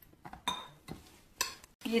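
A few light knocks and clinks against a stainless steel mixing bowl as hands work flour dough in it, the first with a short metallic ring about half a second in.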